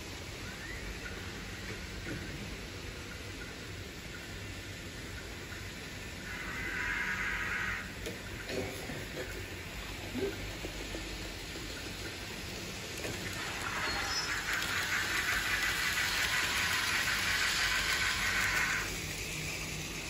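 Hobbytrain model steam locomotive and coaches running on plastic viaduct track: the small electric motor whines and the wheels click fast over the rails. It grows louder briefly about six seconds in, then again from about thirteen seconds in, dropping away shortly before the end.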